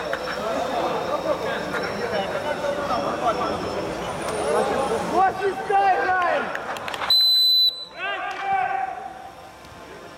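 A referee's whistle gives one steady, loud blast lasting under a second, about seven seconds in, blown for the kick-off. Players' voices call out before and after it.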